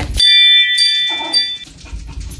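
A bright chime of several ringing tones that starts sharply and rings for about a second and a half, then stops.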